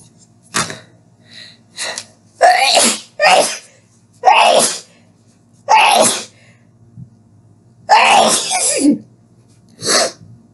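A woman sneezing repeatedly in a fit, about five loud sneezes with smaller ones between, each a short sharp burst.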